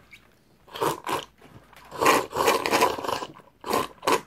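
A man slurping and lapping water from a pet water bowl with his face down in it, like a dog drinking. A short burst of slurps comes about a second in, a longer run of wet slurping follows from about two seconds, and one more comes just before the end.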